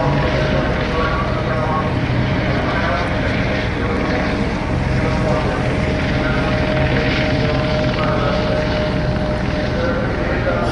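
Police helicopter overhead, a steady drone with a constant whine running under it.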